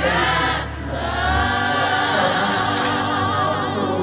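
A choir singing, several voices holding long notes with vibrato.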